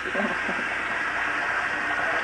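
Bathroom sink faucet running steadily, water splashing into the basin and over wet hair being washed under it.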